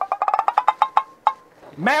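A rapid run of short, pitched wood-block-like taps, about a dozen in the first second, then a single tap a moment later: a comic sound effect.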